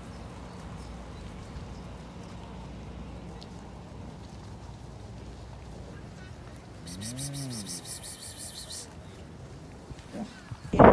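Young cattle moving through a grass pasture over a steady low background. About seven seconds in, one animal moos once: a short call that rises and falls in pitch.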